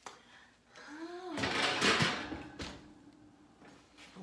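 Disposable aluminium foil baking pan crinkling and scraping as it is lifted off an oven rack and set down on a countertop, with a knock or two, just after a brief hummed voice sound.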